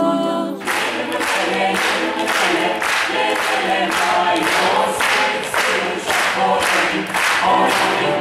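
A mixed a cappella choir singing. Sustained held chords for the first half-second, then a livelier song with the singers clapping a steady beat, a little over two claps a second.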